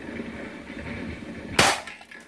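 A single sharp shot from an upgraded spring-powered airsoft pistol, a Colt Black Mamba replica, about one and a half seconds in, after some handling noise.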